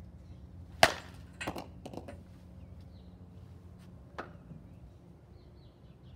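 A bat hits a softball off a batting tee with a single sharp crack about a second in. A few fainter knocks and clicks follow.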